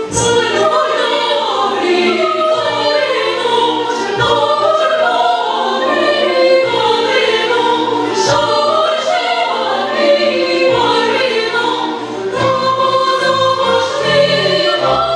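Women's choir singing in full voice, with a symphony orchestra accompanying underneath.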